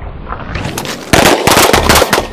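A rising rumble, then from about a second in a loud, rapid run of shots, most likely automatic gunfire.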